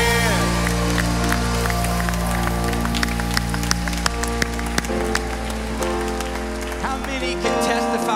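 A worship band's final held chord ringing out as the singing stops, with scattered clapping from the congregation. About five seconds in a softer held chord takes over, and the deep bass fades out near the end.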